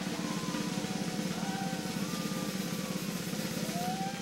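Jazz-fusion band opening a live number: a loud, dense rumble with a rapid pulse starts abruptly and holds steady, with a pitched tone sliding upward near the end.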